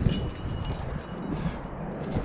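Wind buffeting the camera's microphone in uneven gusts, with faint clicks and scrapes mixed in.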